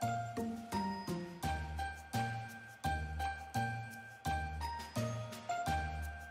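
Background music: a light tinkling tune of bell-like notes over a low bass note on each beat, about three beats every two seconds.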